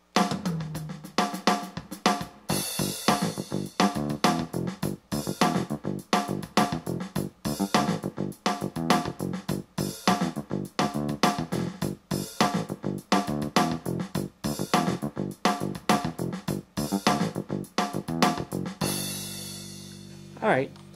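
Kawai ES8 digital piano playing one of its built-in drum rhythms (kick, snare, hi-hat and cymbals) with piano chords played over it, heard through the instrument's own built-in amplifier and speakers. It starts at once and runs as a steady groove, ending on a held chord near the end.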